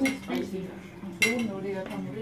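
Dishes and cutlery clinking at a dinner table, with two sharp clinks about a second apart, over people talking.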